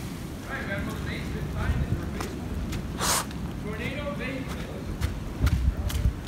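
Wind rumbling on a handheld microphone and footsteps on wet ground while walking, with faint voices in the background. A short sharp rustle comes about three seconds in.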